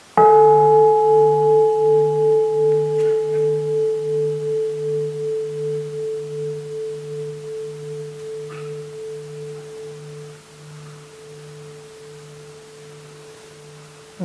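A bowl-shaped mindfulness bell struck once, ringing with a slow, wavering beat in its lower tone and fading away over about ten seconds.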